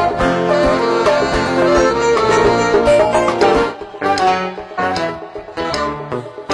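Live band playing an instrumental passage, with plucked guitars to the fore. The music is full and loud at first, then drops softer a little past halfway.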